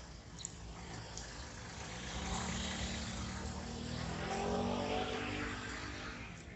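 A motor vehicle passing close by on the street, its engine note rising in pitch as it accelerates, swelling over a few seconds and fading near the end.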